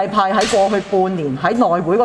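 A woman speaking Cantonese at a press conference, with a brief sharp noise about half a second in.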